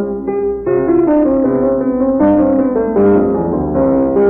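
Solo piano playing a classical piece in a steady run of notes, a home recording with a dull, muffled top end.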